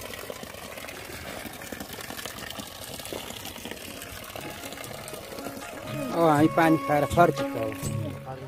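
A steady hiss of water running from an outdoor tap, then a person's voice, loud and wavering in pitch, over the last two seconds.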